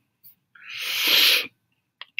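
A man's long, noisy breath, swelling over about a second and cutting off sharply.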